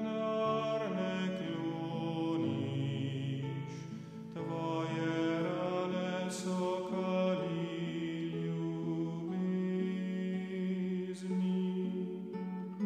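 A choir singing a slow Slovenian Lenten hymn in long held notes, its phrases marked by brief hissing consonants about four, six and eleven seconds in.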